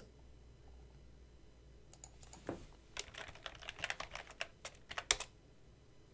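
Typing on a computer keyboard: a quick run of keystrokes starts about two seconds in and stops about a second before the end, as a web address is entered into a browser.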